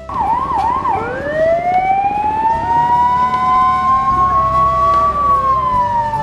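Ambulance siren: a few quick yelps at the start, then a long wail that rises slowly and begins to fall near the end.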